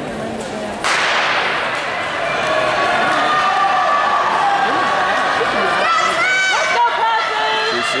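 Starting gun fires once about a second in, echoing through an indoor track hall, then spectators cheer and yell loudly as the sprinters run, with high shrieking shouts near the end.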